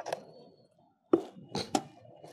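Unpacking handling noise: sharp knocks and taps of a cardboard box and a bubble-wrapped car stereo being handled and set down on a tiled floor. After a short quiet gap, the loudest knock comes about a second in, followed by a few quicker taps.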